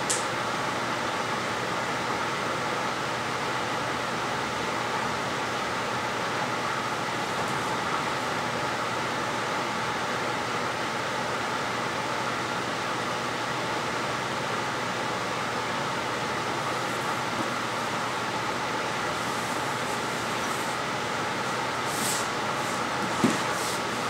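Steady, unchanging rushing background noise in a room, with a faint click right at the start and no voices.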